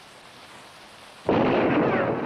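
A single revolver shot in a film soundtrack, the gun fired into the ceiling. It comes suddenly and loud about a second and a half in, after low hiss, and fades slowly.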